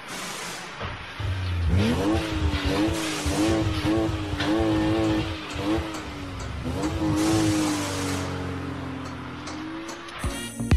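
Intro sound design: a revving car-engine sound effect over music. The pitch rises a little under two seconds in, then wavers up and down repeatedly and settles toward the end.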